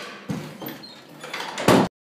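A door is handled with a few lighter knocks, then slammed shut near the end, the slam being the loudest sound.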